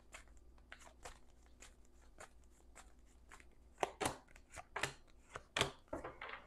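Tarot cards being drawn from the deck and laid down on a table: a run of light, irregular card clicks and snaps, with a few sharper ones in the second half.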